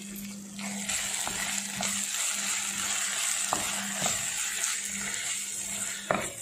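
Thick chana masala gravy sizzling in a pan while a spatula stirs in chopped coriander leaves, with a few light taps of the spatula against the pan.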